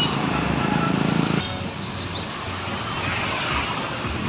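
Engine and road noise of a moving vehicle, a steady rumble that drops off abruptly about a second and a half in, leaving a quieter steady traffic noise.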